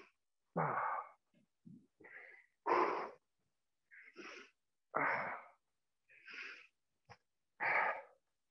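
A man breathing hard, out of breath from exercise. Strong exhales come about every two and a half seconds, with softer breaths in between.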